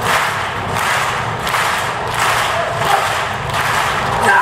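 Stadium crowd noise with spectators clapping in a slow, even beat, about one clap every 0.7 seconds, during a high jumper's run-up and jump.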